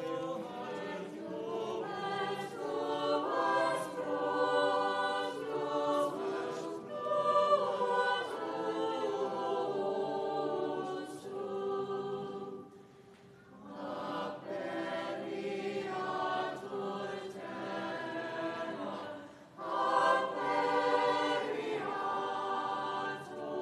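Church choir singing sacred music during the Latin Mass, with two brief pauses between phrases, about 13 and 19 seconds in.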